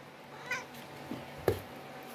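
A domestic cat making two short, faint meows.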